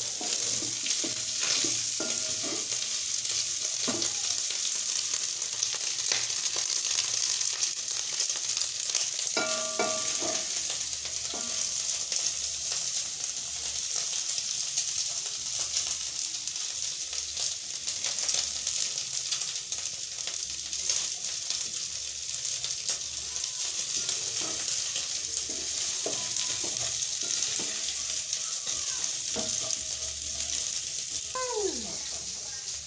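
Matumbo (beef tripe) sizzling as it dry-fries in a pan. A steady hiss is dotted with many small crackles and the scrape and tap of a wooden spoon stirring it.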